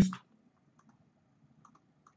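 A few faint, scattered computer clicks, two of them in quick pairs, just after the spoken word "paste" ends.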